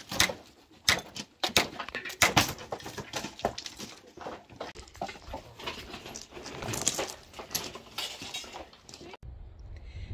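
Dry, weathered wooden boards knocking and clattering against each other and the trailer bed as they are handled, a rapid series of hollow wooden knocks that stops abruptly near the end.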